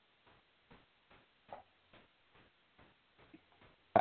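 Faint, even ticking, about two to three ticks a second, over a near-silent line.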